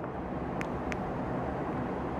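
Steady background noise, a constant low rumble and hiss, with two faint short ticks a little over half a second in and just before the one-second mark.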